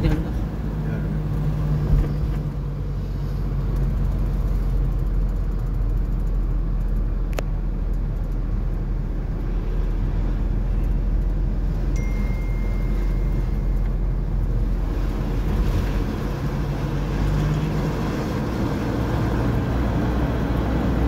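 Car engine and road noise heard from inside the cabin, a steady low rumble with an engine hum. A single sharp click comes about seven seconds in, and a thin high tone sounds for about two seconds past the middle.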